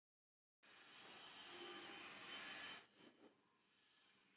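Near silence: faint room hiss that fades in just under a second in and cuts off near three seconds.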